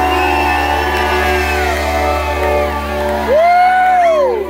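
Live country-rock band holding out a sustained chord on electric guitars and bass, with cymbals, while audience members whoop and shout. One loud rising and falling whoop comes near the end.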